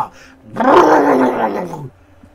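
A man's voice making a loud, rasping growl in imitation of a chainsaw, starting about half a second in and falling in pitch over about a second and a half.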